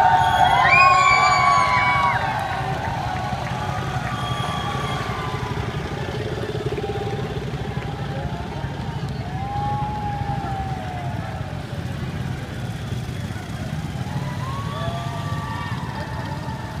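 A motorcade of police motorcycles and cars driving past, a steady low engine and traffic rumble, with people's voices calling out over it, loudest in the first two seconds.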